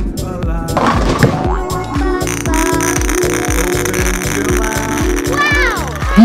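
Upbeat children's song backing track with a steady beat, overlaid with cartoon sound effects, including a falling whistle near the end.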